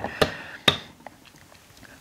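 Two short sharp clicks, about half a second apart, then faint room tone.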